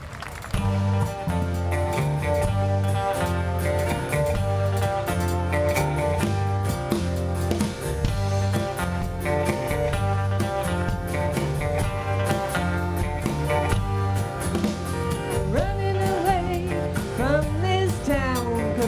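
Live country/Americana band playing a song's instrumental intro on electric bass, drums and guitars, with a steady beat. It kicks in about half a second in.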